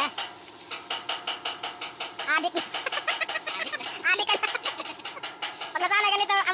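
Compressed-air paint spray gun hissing as it sprays a van's body; the hiss stops about three seconds in and comes back just before the end. A rapid ticking and a few short pitched calls sound over it.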